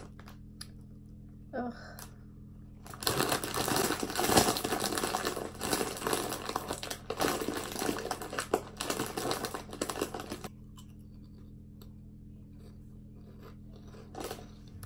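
Plastic chip bag of Gusanitos corn puffs crinkling as it is handled, a dense crackle that starts about three seconds in and stops a few seconds before the end, after a short groan of "ugh".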